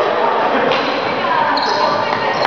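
Voices echoing in an indoor sports hall, with players' shoes squeaking and thudding on a badminton court; a short high squeak comes about one and a half seconds in.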